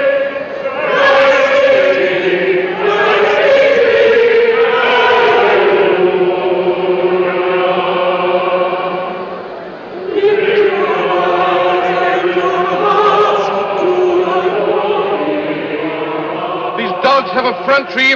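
A group of voices singing a slow hymn together in long, held phrases, the sound dipping briefly about ten seconds in before a new phrase begins.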